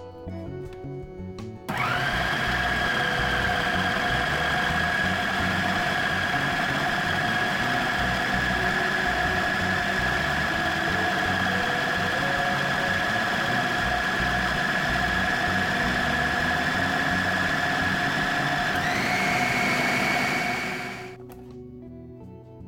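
Small electric food processor running steadily with a motor whine, chopping parsley, bread, hard-boiled egg, anchovy and capers into a green sauce. It starts about two seconds in, its whine steps up in pitch near the end, and it switches off about a second before the end.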